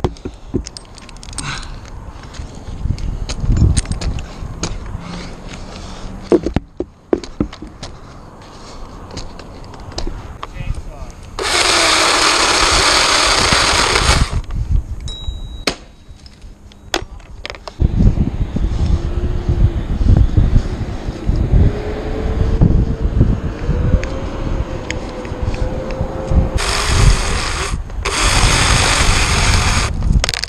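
A climber's top-handle chainsaw being run in the tree, in two loud bursts of a few seconds each, about twelve seconds in and again near the end, with a lower running sound between them. Knocks and rope-handling noise sit close to the helmet microphone.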